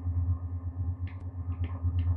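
Low, steady electronic drone from a chain of guitar effects pedals with bass overdrive, pulsing rapidly in level, with a few faint clicks about a second in.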